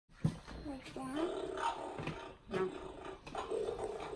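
Playskool Kota the Triceratops animatronic ride-on toy playing its recorded dinosaur roar through its built-in speaker, in long drawn-out calls that glide in pitch. A short thump sounds just after the start.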